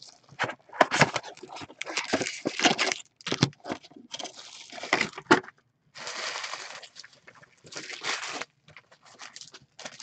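Plastic shrink wrap and cardboard being torn, crinkled and handled as a sealed hobby box of trading cards is opened. The sound comes as irregular crackles and clicks, with a longer stretch of rustling about six seconds in.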